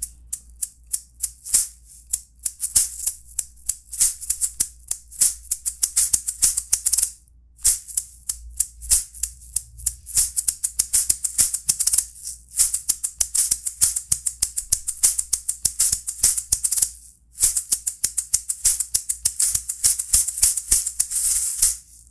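A pair of maracas played solo by a Venezuelan maraca player, in a fast, driving rhythm of rapid shakes and accents. It breaks off briefly twice, about seven seconds in and again about seventeen seconds in.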